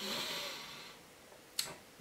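A pause in a man's talk: faint breath noise fading away, then a single short, sharp mouth click about one and a half seconds in, just before he speaks again.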